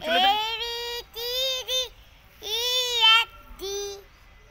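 A young child singing in a sing-song voice: four or five long held notes broken by short pauses.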